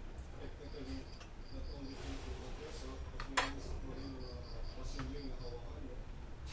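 Faint background voices and high, cricket-like chirping in short pulses, about four a second, with one sharp knock about halfway through.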